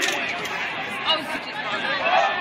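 Overlapping chatter of several people talking at once, a crowd of spectators' voices with no single clear speaker.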